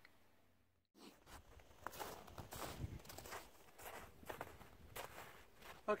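Footsteps on snow, irregular steps about two or three a second, starting about a second in after a brief drop to silence.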